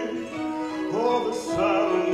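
Opera singing with orchestral accompaniment: a voice with vibrato over a long held note.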